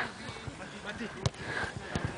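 Faint, distant voices of players warming up on a grass football pitch, with a couple of sharp knocks, one about a second in and one near the end.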